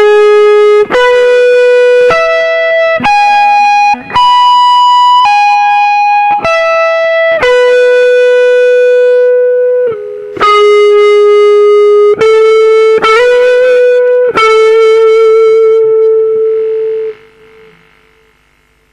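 Les Paul-style electric guitar playing a slow lead melody of single sustained notes, each held about a second, with a slide up and vibrato on the later notes. The last note is held, then the sound drops away about a second before the end.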